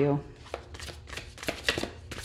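A deck of tarot cards being shuffled by hand: a run of quick, irregular card clicks and flicks, a few louder ones in the second half.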